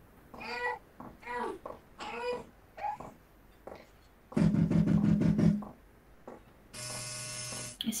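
Played-back recording from a sound-event dataset. A few short, wavering pitched cries come in the first three seconds, then a loud buzzing burst at about four and a half seconds. Near the end a steady alarm tone with many overtones sounds for about a second.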